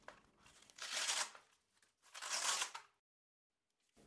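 Two short rustles of a nylon placard and its hook-and-loop panels being handled, each about half a second long.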